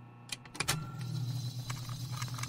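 Sound-design opening of an audio drama promo: a low steady hum that comes in about half a second in, with scattered sharp clicks and knocks over it.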